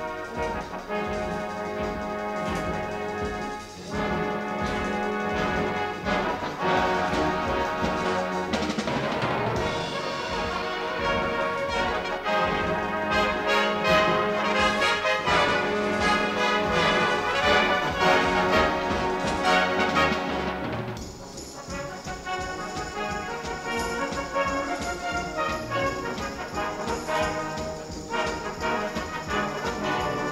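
A full brass band of cornets, horns, euphoniums, trombones and tubas playing a lively piece, growing loud through the middle and then dropping back to a quieter passage about two thirds of the way through.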